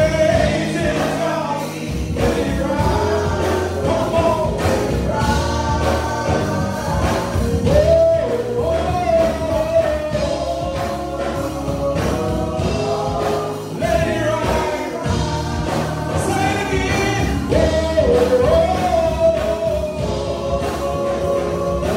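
A gospel praise team of three voices singing together into microphones over instrumental accompaniment with a steady beat, the sung notes held and gliding between pitches.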